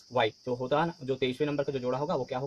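A man speaking, with a steady high-pitched hiss behind his voice.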